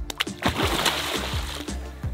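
A large bass striking a baitfish at the pond's surface: a splash about half a second in that lasts about a second. Background music with a steady beat plays throughout.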